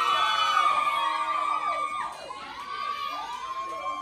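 An audience of women screaming and cheering, many high voices held and overlapping. The cheering is loudest at the start and dies down about halfway through, with a smaller swell after.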